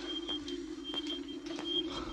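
Electronic tracking device running with a steady low hum, faint high beeps pulsing at uneven intervals and a few soft clicks, as a tense film sound effect.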